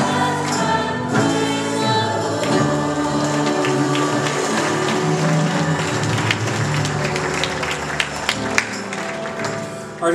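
Live contemporary worship music: a group of singers with piano, guitar and drums performing a praise song, getting quieter near the end.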